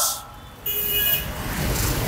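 A passing motor vehicle, its noise swelling toward the end. A brief steady high tone sounds about two-thirds of a second in.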